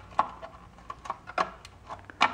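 Plastic dial-lamp housing of a Sansui 771 receiver being worked into place against its metal chassis, giving a handful of light clicks and knocks.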